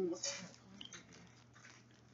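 Faint rustling and a few small clicks of plastic as a Mini Brands surprise ball and its wrapping are handled.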